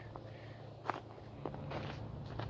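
Footsteps on ground covered in fallen leaves: a few soft separate steps with a light crunch.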